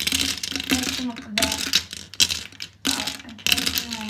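Lipstick tubes clattering and clinking against a ceramic washbasin and each other as a hand rummages through a pile of them, a rapid, irregular run of small knocks throughout.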